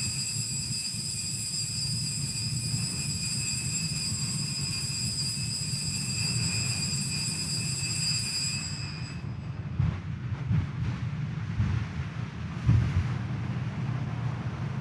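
Altar bells ringing in a steady high tone for about nine seconds at the elevation of the host after the consecration, stopping suddenly, over a steady low rumble with a few soft thumps afterward.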